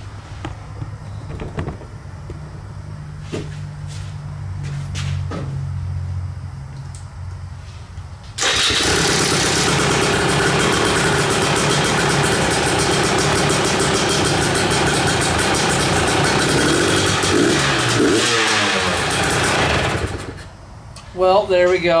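Husqvarna dirt bike engine, rebuilt after dirt got through its intake, turning over for about eight seconds, then catching and running loud for about twelve seconds before winding down and stopping. It starts and runs despite the dirt damage.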